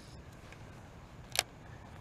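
A single sharp click from a baitcasting reel being handled, about one and a half seconds in, over faint steady outdoor background noise.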